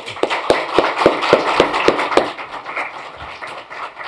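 Audience applauding, with one nearby pair of hands clapping about four times a second above the crowd. The applause fades away after about two seconds.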